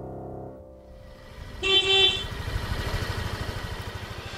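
A held music chord fades out. Then a Yamaha maxi-scooter's horn beeps once, for about half a second, over the scooter's engine running low with a quick, even pulse.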